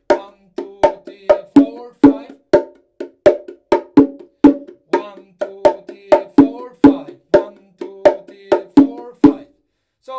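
A pair of bongos played by hand in a 5/4 rhythm: a steady run of short strokes, with low notes on the larger drum on beats four and five. The playing stops about nine seconds in.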